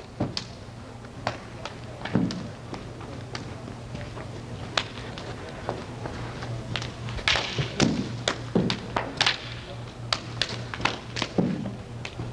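Fighting sticks clacking together in sharp, irregular knocks during light sparring, several in quick succession at the busiest moments, with a few duller thuds among them. A steady low hum runs underneath.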